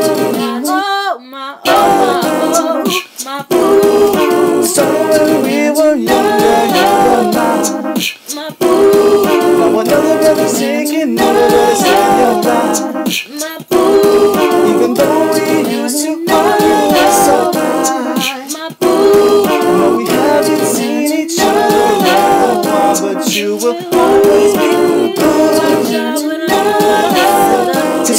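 A cappella singing by a man and a woman, a short harmonised vocal phrase repeating about every two and a half seconds.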